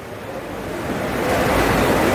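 Wind buffeting the phone's microphone: a rushing noise with a low rumble that swells over the first second and a half, then holds steady.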